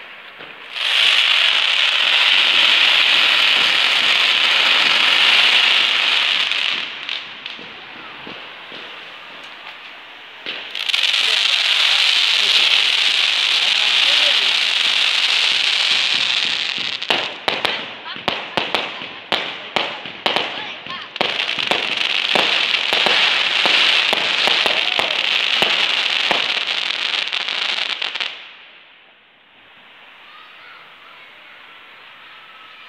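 Fireworks shooting up showers of sparks, making a loud hiss in three long spells of several seconds each. Each spell starts and stops abruptly, and the last cuts off suddenly near the end. Between the second and third spells comes a quick run of sharp crackling pops.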